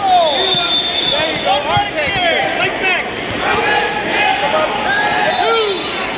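Spectators and coaches shouting encouragement over the hubbub of a crowded gymnasium during a youth wrestling bout, with a few dull thumps of bodies on the mat.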